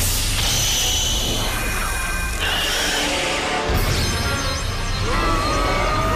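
Action music from the cartoon's soundtrack, mixed with crashing sound effects; a wavering tone comes in about five seconds in.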